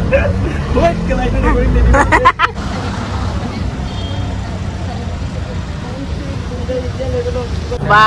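Auto-rickshaw engine running with a low rumble as the vehicle drives along, heard from inside the open cabin with voices over it. About two and a half seconds in, the sound changes abruptly to a steady rushing road noise with faint talk.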